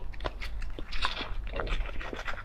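Close-miked wet mouth sounds of eating raw sea urchin roe: soft chewing and lip smacks with a string of short clicks, a little louder about a second in.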